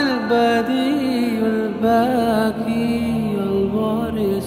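A male voice singing a slow devotional chant of the Arabic names of God, holding long notes that glide from one pitch to the next, over soft musical accompaniment.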